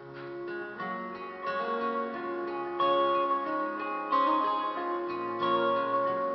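Acoustic guitar played live, picked notes ringing out one after another in an instrumental passage between sung lines.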